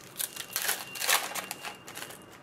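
Foil wrapper of a trading-card pack being torn open by hand: a run of crackling crinkles lasting about a second and a half, loudest in the middle.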